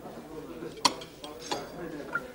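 Cutlery clinking on china plates during a meal, with a sharp clink a little under a second in and a second one about halfway through.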